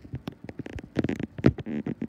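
Footsteps and handling of a handheld camera while walking: a string of irregular knocks and scuffs, the sharpest about a second and a half in.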